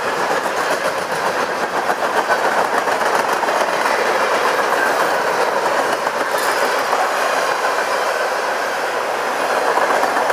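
Freight train cars loaded with empty garbage containers rolling past close by: a steady noise of steel wheels running on the rails, with clickety-clack from the wheels.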